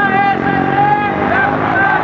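A raised voice at a street protest, holding one long high note and then breaking into short rising-and-falling calls, over steady street noise.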